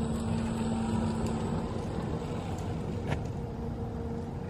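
Simai TE70 48 V electric tow tractor driving, its drive motor giving a steady whine that drops away about a second and a half in, over a low rumble of tyres on paving and wind. A single sharp click about three seconds in.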